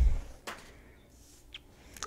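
A sheet of paper being set down on a bench: a low bump at the very start, a light sharp tap about half a second in, and a fainter tick about a second and a half in.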